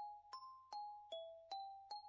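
Quiet background music: an even run of soft, bell-like notes, about two and a half a second, each ringing briefly.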